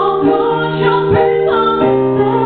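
A woman singing live at a microphone over sustained electric piano chords; the chord changes near the end.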